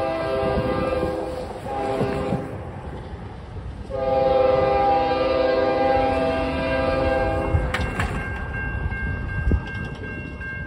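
Multi-chime air horn of the lead CN ES44DC locomotive blowing the grade-crossing signal. A long blast ends just after the start, a short blast comes about two seconds in, and a long blast of about three and a half seconds starts four seconds in. Near the end the crossing signal's bell starts ringing over the low rumble of the approaching train.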